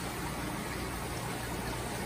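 Steady hiss of circulating aquarium water with a low pump hum underneath, unchanging throughout.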